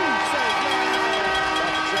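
Hockey arena goal horn sounding a steady, sustained chord, the signal that a goal has just been scored.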